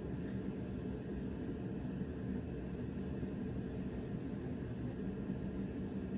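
Steady low background hum of room tone, with no distinct sounds standing out.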